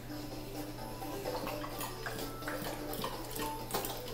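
Faint electronic tune of short notes from a light-up lion baby activity walker, over a steady low hum.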